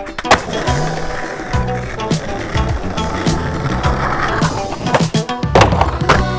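A skateboard landing a flip trick with a sharp clack just after the start, then its wheels rolling over rough concrete. Near the end comes another quick clatter of the board from the next trick. A music track plays underneath.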